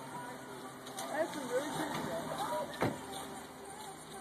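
A car driving past on the street, with indistinct voices nearby and a single sharp knock close to three seconds in.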